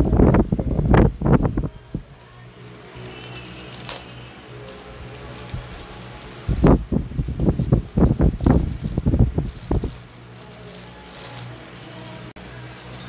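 Plastic wrapping on a gift box crinkling and rustling as it is pulled off, in two spells, one at the start and one from about six to ten seconds in, with a steady low hum between.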